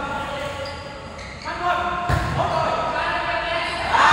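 Volleyball struck once with a dull thud about two seconds in, echoing in a large sports hall, while players' voices call out on the court.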